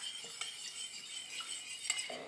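Metal spoon stirring a liquid soy sauce and orange juice marinade in a glazed ceramic bowl, faintly, with a couple of light clinks of the spoon against the bowl.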